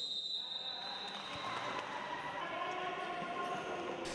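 Faint futsal game sound in a sports hall: a high, steady whistle sounds at the start and fades over the first couple of seconds, then faint voices from players and spectators.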